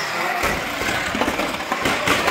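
Radio-controlled model banger cars racing on a carpet track: a steady whirr of small motors and tyres, with a few knocks.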